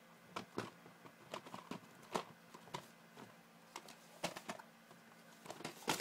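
Plastic VHS tape cases being shifted and knocked against each other: a scatter of light clicks and knocks. Near the end comes a much louder knock as a tape falls.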